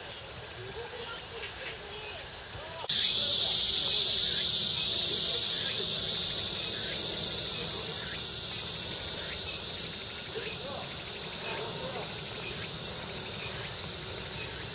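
Cicadas buzzing in a steady, loud chorus that starts suddenly about three seconds in and eases to a thinner, higher buzz about ten seconds in. Faint voices sit behind it.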